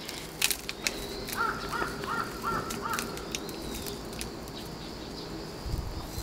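A bird calls four times in quick succession, about one and a half to three seconds in. Around the calls come scattered light clicks and crumbles of coarse, gritty potting mix and roots being worked apart by hand.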